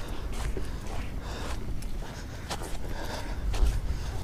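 Handling and movement noise: a low rumble with a few light clicks and knocks.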